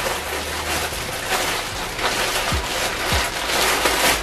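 Large plastic shipping mailer rustling and crinkling continuously as hands rummage inside it to pull out a smaller plastic-wrapped package.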